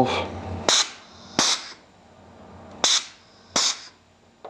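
A 5-way, 2-position plunger-operated, spring-return pneumatic valve is pressed and released twice. Each shift gives a sharp pop and a short hiss of air blowing out of the unsilenced exhaust ports as the double-acting air ram strokes back and forth. That makes four bursts in two pairs.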